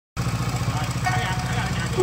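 A cruiser motorcycle's engine idling with a steady, evenly pulsing low rumble.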